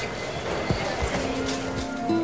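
Soundtrack music beginning faintly over a steady background hiss, with a couple of low thumps about a second in.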